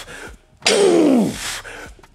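A man's breathy, effortful groans, each falling in pitch: the tail of one at the start and a fuller one beginning just over half a second in, as a lifter breathes out while bracing under and lowering a loaded barbell.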